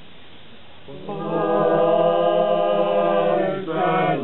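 Unaccompanied male choir singing. After a pause of about a second, they come in on a long held chord lasting over two seconds, break briefly near the end, and begin the next phrase.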